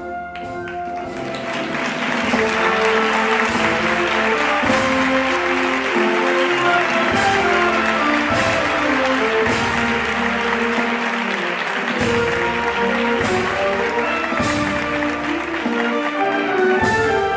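Audience applause that swells about a second in and carries on over a band playing a processional march.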